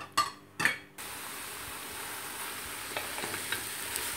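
A wooden spoon knocks a few times against a steel pot of raw lamb, tripe, onion and spices. About a second in, a steady sizzle takes over as the lamb, tripe and onions fry in olive oil, with light scrapes of the spoon stirring them.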